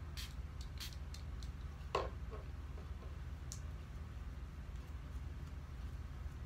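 Sticky slime being kneaded by hand: a few small clicks and one louder tap about two seconds in, over a low steady hum.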